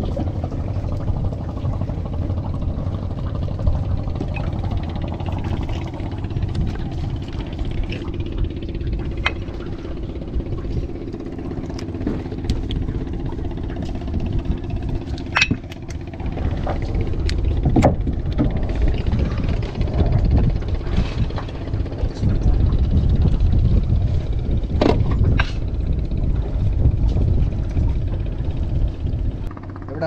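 A fishing boat's engine running steadily with a low rumble, a little louder in the second half, with a few sharp knocks from handling the net and catch on deck.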